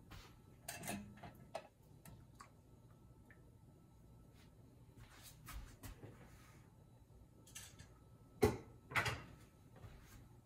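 Metal jar lifter clinking and knocking against glass canning jars and the aluminium pressure canner as hot quart jars are lifted out: scattered light clicks, with two louder knocks near the end.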